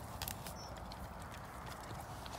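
A dog sniffing and snuffling in the grass close by, with light rustling and a few faint short clicks.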